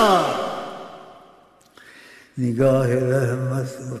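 A man's unaccompanied voice chanting a devotional Urdu naat. A held note falls in pitch and dies away in reverberation, then after a short pause he sings another long phrase, holding a steady pitch.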